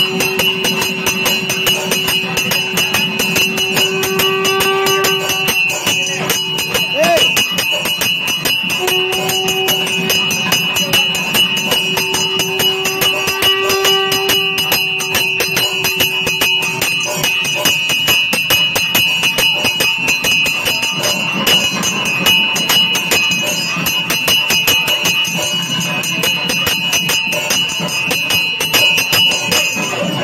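Kerala temple percussion ensemble with rapid, dense drumming and ringing cymbals throughout. A wind instrument holds one long note for about the first six seconds and again from about nine to seventeen seconds in.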